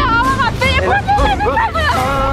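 Several people shrieking and yelling at once in high voices, their cries overlapping.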